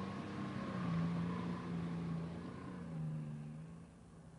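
An engine of a heavy vehicle running with a steady hum that rises and falls slightly in pitch, then fades away near the end.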